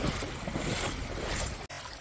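Footsteps sloshing through shallow seawater on a tidal flat, about two steps a second, with wind noise on the microphone. The sound cuts out abruptly for an instant near the end.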